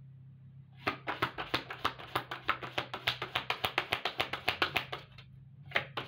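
A tarot deck shuffled by hand: a quick run of card slaps, about nine a second, lasting some four seconds, then a short pause and another run starting near the end.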